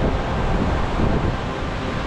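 Wind buffeting the microphone in a steady, rough rumble, with surf breaking on the rocky shore beneath it.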